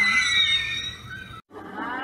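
A man's high-pitched shriek, held and wavering for about a second, then cut off abruptly. After a brief gap a faint low hum follows.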